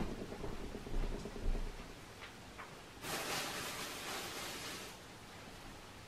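Yarn packaging being handled: a sharp knock at the start and a few light bumps, then about two seconds of rustling from about three seconds in.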